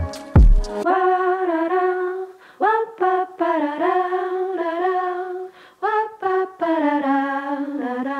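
Lo-fi hip-hop beat in which the drums and bass cut out about a second in, leaving an unaccompanied vocal sample: a voice humming a wordless melody in short phrases with brief gaps between them.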